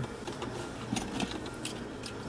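A few light, scattered clinks and rattles of small hard objects, over a low steady background hum.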